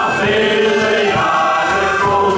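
Male shanty choir singing a sea shanty over its band accompaniment, the voices coming in at the start with long held notes.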